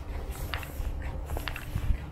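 Footsteps of a person walking at a steady pace on a wet, partly snow-covered paved path, over a low continuous rumble.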